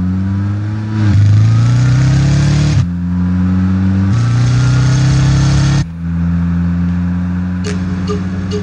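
Motor vehicle engine running and revving, its pitch climbing in stretches and dropping or jumping as if between gears, with several abrupt changes.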